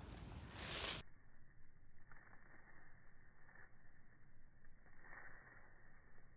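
About a second of handling noise as a phone or camera is passed from hand to hand. Then the sound cuts to a muffled, nearly quiet outdoor track with a few faint soft rustles.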